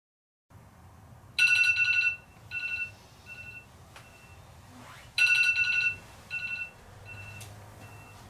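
Electronic alarm ringing: a long tone followed by about three shorter, fainter beeps of the same pitch, the pattern sounding twice.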